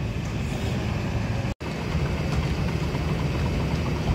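Steady low diesel drone of a tracked excavator working on a demolition site, broken by a brief total dropout about a second and a half in.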